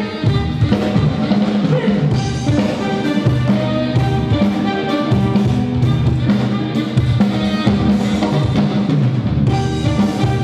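Band music with a steady drum-kit beat, snare and bass drum over bass and guitar lines, playing without a break.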